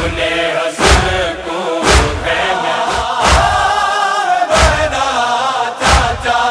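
A noha, a Shia lament, chanted by a male voice over a slow, regular deep thump about every second and a quarter that keeps the beat.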